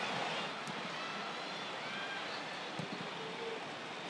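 Field sound of a women's soccer match in an almost empty stadium: a steady wash of background noise with faint distant shouts from players and a sharp knock near three seconds in.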